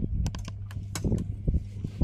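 A rapid, irregular run of sharp clicks and taps over a steady low hum.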